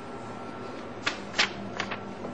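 Paper being handled: three short, crisp rustles or ticks, the first about a second in and the last near the end.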